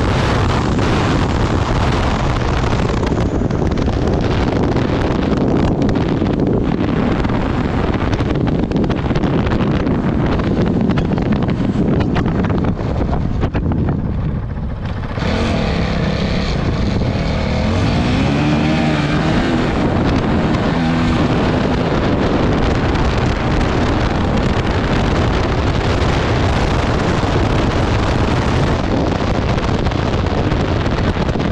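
Honda CRF450RL's single-cylinder four-stroke engine running hard under load, with wind noise on the helmet microphone. About 14 seconds in the throttle closes briefly, then the engine note rises and falls for several seconds before settling back into a steady run.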